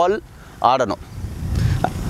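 A man's voice: the tail of a phrase, then a short word about half a second in. A low rumble builds over the last second.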